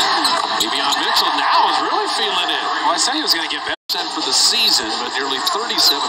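Basketball TV broadcast audio: a commentator talking over steady arena crowd noise. The sound cuts out completely for a split second just before four seconds in, at an edit.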